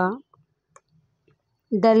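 A woman reading aloud in Telugu; her voice trails off just after the start, then comes a pause of about a second and a half with a few faint clicks before she speaks again near the end.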